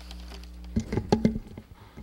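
Handling noise on a podium microphone: a quick cluster of knocks and rustles about a second in, over a steady low electrical hum.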